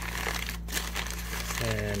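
Packing paper crinkling and crackling continuously as hands unwrap a package.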